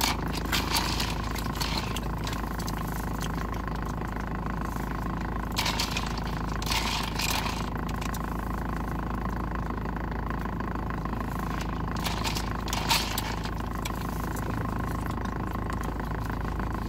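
Steady hum of a car's engine idling, heard inside the cabin, with a few short crackly noises from eating breaded chicken tenders, around a third of the way in and again past the middle.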